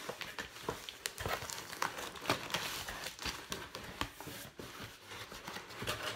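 Cardboard box and its packing being opened by hand: irregular rustling and crinkling, with many small clicks and crackles as the flaps are pulled back.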